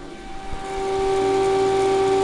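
Bitmain Antminer L3+ ASIC miner's stock 6,000 RPM cooling fans running flat out: a loud rushing hiss with a steady whine over it, rising in level over the first second and then holding.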